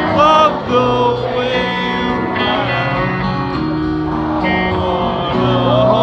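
Live rock band music: acoustic guitar chords ring under a singing voice, recorded from the crowd on a phone.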